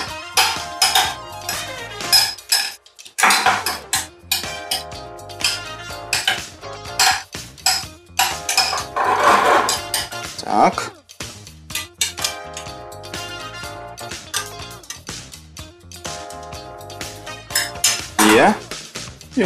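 A metal spoon clinking and scraping against a small stainless-steel saucepan at irregular intervals as butter is stirred while it melts, over background music.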